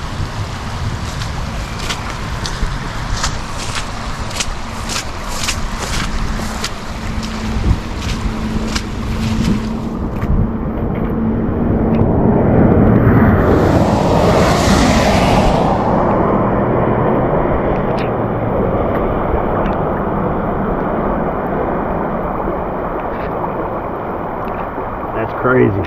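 Rainstorm wind buffeting the microphone over steady rain and running floodwater. There are light taps through the first ten seconds, and a louder rush swells and fades near the middle.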